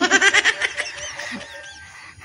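A chicken calling, loud in the first half second or so, then trailing off into fainter calls.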